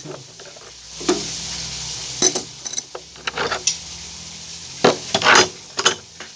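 Metal tools and pipe fittings being handled at the plumbing: a series of separate clinks and knocks, with two short hissing bursts about five seconds in.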